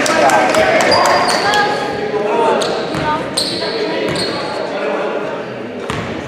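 Basketball game sounds in an echoing gym: voices calling out, loudest in the first second or so, and a basketball bouncing on the hardwood court.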